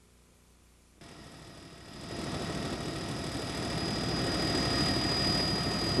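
Near silence, then about a second in the steady drone of an aircraft engine, heard from inside the cabin, fades in and grows louder, with a thin steady whine high above it.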